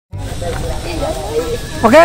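Wind buffeting the microphone, a rough low rumble, with faint voices in the background; near the end a man says "Oke".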